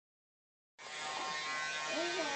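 Pink toy vacuum cleaner's small motor running with a steady electric buzz, starting just under a second in.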